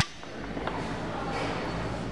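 Store background noise: a steady low hum with faint distant voices, and one faint click about two-thirds of a second in.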